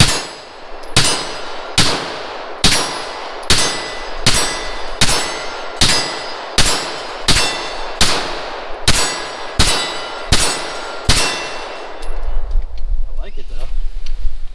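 About fifteen shots from a 9 mm Glock-pattern pistol built on a Polymer80 frame with a Grey Ghost Precision slide, fired at a steady pace of a little over one a second. Each shot is sharp with a short ringing tail. The firing stops about eleven seconds in, and a low rumble follows.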